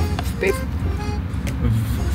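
A woman's voice saying the short brand name 'fwip' playfully, over background music and the steady low rumble of a car cabin.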